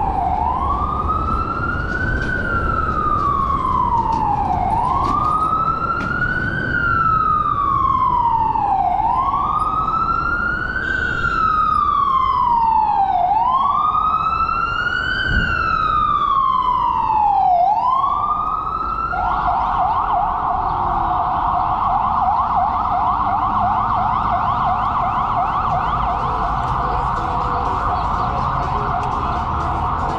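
Emergency vehicle siren on a slow wail, rising and falling about every four seconds, then switching about two-thirds of the way through to a fast yelp. Low wind and road rumble from the moving scooter sits underneath.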